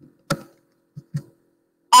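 A few short clicks in a pause between speech: one sharp click about a third of a second in, then two softer ones close together about a second in.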